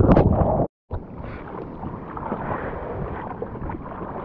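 Breaking whitewater rushing loudly over the camera, cutting off suddenly under a second in; then quieter water sloshing and splashing around the surfboard, with wind on the microphone.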